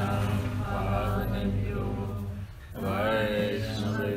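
Devotional mantra chanting sung in long held phrases, with a short break about two and a half seconds in before a new phrase rises in pitch, over a steady low hum.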